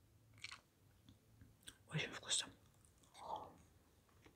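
Quiet, close-up mouth sounds of a person eating chocolate sponge cake: soft chewing and wet lip smacks, with a louder cluster of smacks about two seconds in.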